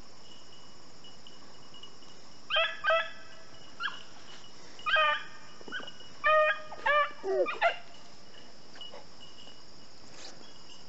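A hound barking in short, high yelps, about nine of them in bunches from a couple of seconds in until near the end, giving tongue on a rabbit's scent trail. A steady chirping of insects runs underneath.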